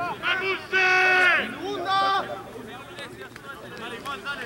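Men shouting on a rugby pitch as a scrum is set: one loud, high, held shout about a second in that drops at its end, then a shorter shout, with scattered talk around them.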